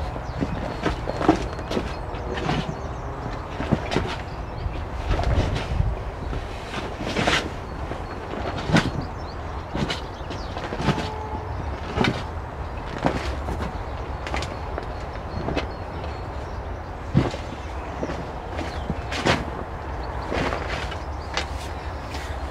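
Spade digging into and turning a heap of compost, a scrape or thud roughly every second or so, over a steady low rumble.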